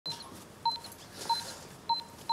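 Short electronic beeps, three in a row about two-thirds of a second apart, each a brief high tone.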